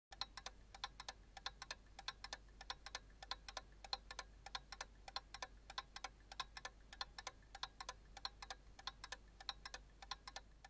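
Faint, fast clock ticking, about four ticks a second.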